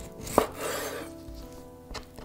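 Chef's knife chopping through raw chicken wings on a wooden cutting board. There is one sharp chop about half a second in, then a short crunching cut, and a lighter knock near the end. Soft background music with sustained notes plays underneath.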